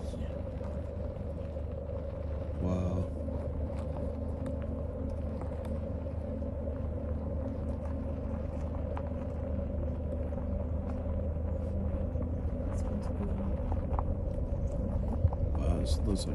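Car engine running at low speed, heard from inside the cabin as a steady low rumble with a constant hum.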